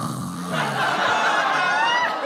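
Audience laughing at a punchline, the laughter swelling about half a second in and carrying on.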